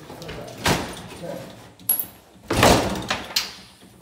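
A broken-in door being handled: a sharp knock about a second in, another near two seconds, then a longer scraping rattle, the loudest sound, near three seconds.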